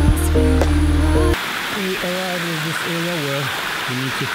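Background music that cuts off suddenly about a second in, giving way to the steady rush of a shallow creek running over rocks, with a man's voice talking over the water.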